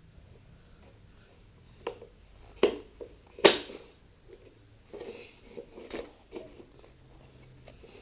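Wooden IKEA Lillabo train track pieces clacking against each other and the floor as they are fitted together: a few separate sharp knocks, the loudest about three and a half seconds in, then softer knocks.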